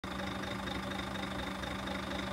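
Heavy truck's diesel engine idling steadily with an even hum.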